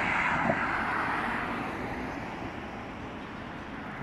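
A passing vehicle's tyre and engine noise, loud at first and fading steadily as it moves away.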